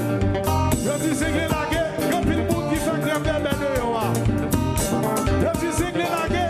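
Live konpa band playing at full volume: a steady dance beat of drums and percussion under electric guitar, with a male lead vocal singing over it.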